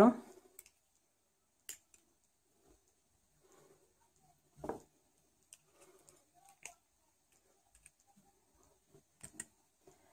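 A few faint, scattered clicks and taps of needle-nose pliers gripping and bending a thin plastic-coated wire, the loudest about halfway through.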